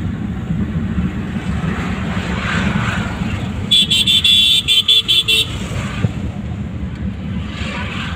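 Steady low drone of engine and road noise inside a moving van's cabin. About four seconds in, a vehicle horn honks in a quick string of short toots for under two seconds.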